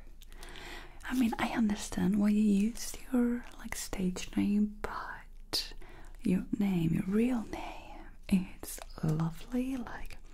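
A woman's soft voice in short stretches of quiet speech and whispering, with pauses between, that the transcript does not make out as words.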